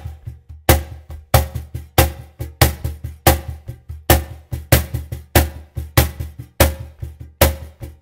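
Cajon played with both hands in a samba-reggae caixa (snare-drum) pattern: a steady, even run of slaps with a louder accented stroke about every two-thirds of a second and softer strokes between.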